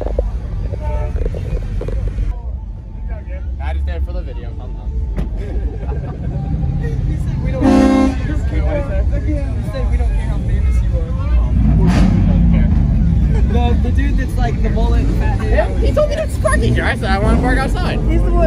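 A vehicle horn toots once, briefly, about halfway through, over a steady low rumble.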